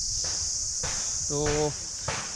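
A steady, high-pitched chorus of insects in the trees, unbroken throughout.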